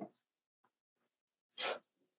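Speech with a pause: one spoken word at the start, near silence, then a short hiss-like sound near the end as the talk resumes.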